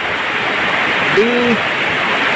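Heavy rain falling steadily, a dense even hiss. One short spoken word comes a little over a second in.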